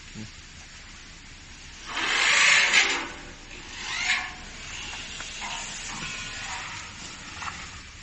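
A loud burst of hiss lasting about a second, some two seconds in, followed about a second later by a shorter, fainter one.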